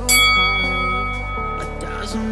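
A single bell-like chime rings out over background music and fades over about a second and a half. It is the workout timer's signal that the work interval has ended and the rest begins.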